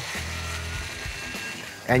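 Cordless power ratchet running, spinning out an ignition coil's hold-down bolt, with a faint steady whine over background music.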